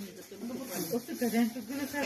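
Indistinct talking voices, with a soft hiss about a second in.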